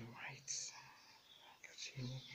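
A voice speaking quietly, mostly in the first second, then fainter.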